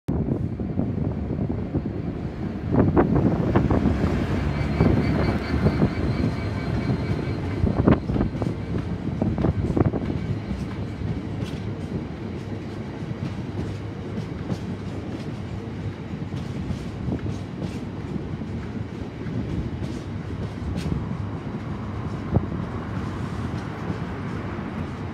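A freight train of covered hopper wagons running past and below, loudest a few seconds in as the head of the train draws level. After that comes a steady rumble of wagon wheels, with regular clicks as they pass over rail joints.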